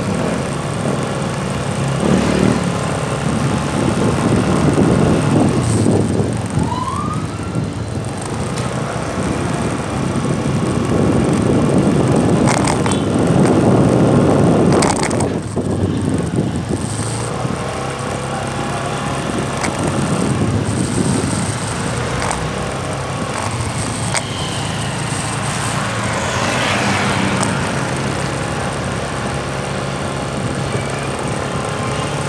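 Motorcycle ride heard from the saddle: the engine running steadily under wind rushing over the microphone, which swells and fades in several surges.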